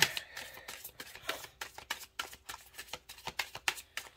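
A deck of tarot cards being shuffled and handled by hand: a run of short, irregular card clicks and snaps.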